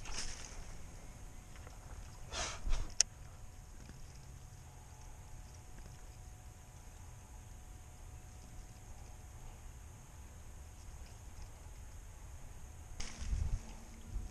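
Faint open-water ambience with a low rumble, broken by handling sounds of a fishing rod and reel on a kayak: a brief rustle at the start, a short noisy sweep followed by a sharp click about three seconds in, and another rustle near the end.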